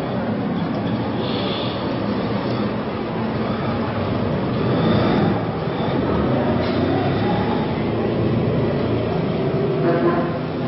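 Steady street ambience: a dense, even rumble of noise with no clear single source.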